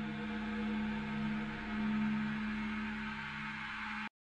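A low electronic drone from a soundtrack, a few steady tones held together, swelling and easing gently.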